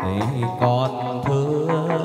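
Live chầu văn ritual music: a singer's long, gliding notes over plucked strings, with a few sharp percussion clicks.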